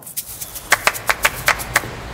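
A quick, irregular run of about seven sharp taps or clicks over a faint hiss.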